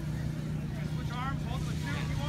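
Distant voices of people at an outdoor event over a steady low rumble.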